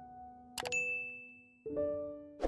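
Sound effects for an animated subscribe button: a click with a bright, high ding about half a second in, then a lower chime of several notes together near the end, each ringing on and fading.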